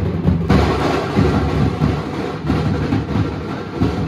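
A troupe of large Maharashtrian dhol drums beaten with sticks, playing a fast, dense, continuous rhythm. The sound turns brighter about half a second in.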